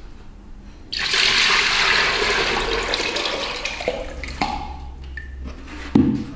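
Thick, milky liquid poured from one plastic bucket into another: a steady, splashing pour that starts suddenly about a second in and thins out over the next few seconds, with a short thump at the very end.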